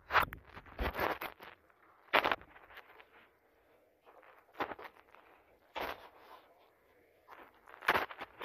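Handling noise from a camera being moved about: irregular sharp knocks and thumps close to the microphone, about six of them, with fabric rustling between them.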